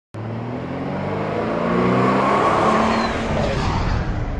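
A Jaguar F-Pace 20d diesel SUV driving past: engine hum and tyre noise build to a peak about two and a half seconds in, then begin to fade near the end.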